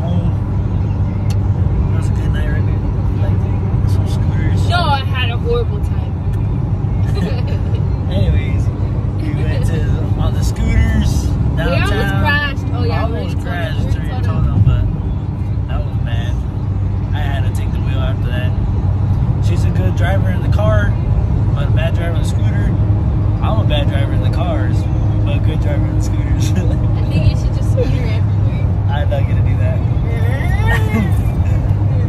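Steady low rumble of road and engine noise inside a moving car's cabin, with voices talking and laughing over it.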